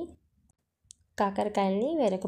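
A voice narrating in Telugu, broken by about a second of near silence in the middle. One faint click falls in the pause.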